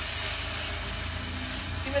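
Wet turmeric and masala paste sizzling steadily in a hot wok of fried onion and tomato as it is stirred with a spatula, the water cooking off as steam.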